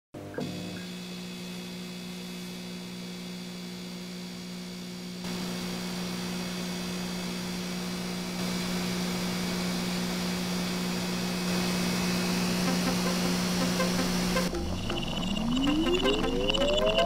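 An old television switching on with a click, then a steady electrical hum with a high whine and static hiss that grows louder in a few steps. Near the end a rising electronic glide sweeps up in pitch.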